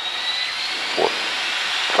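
L-39 Albatros jet trainer's AI-25TL turbofan spooling up to full throttle while the aircraft is held on its brakes for the pre-takeoff run-up. A thin whine rises slowly in pitch over a steady rush of jet noise that grows gradually louder, heard from inside the cockpit.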